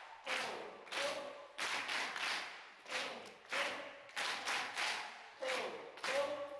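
A crowd of people clapping together in a steady rhythm while chanting 'ho ho, ha ha ha' in unison: the laughter yoga clapping-and-laughing exercise.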